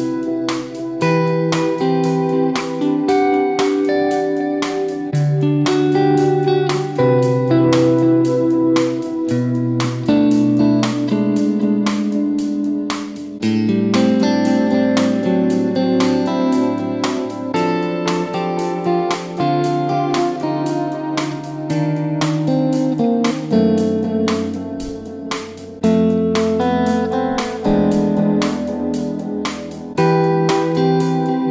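Electric guitar played through reverb and delay, picked notes ringing into one another over a looped guitar part, with lower bass notes coming in about halfway through.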